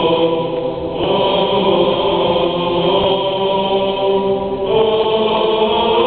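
Choir singing an Orthodox hymn a cappella in long, sustained chords.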